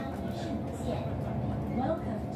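Passengers chatting inside a moving MTR Disneyland Resort Line train car, over the steady low rumble of the train running.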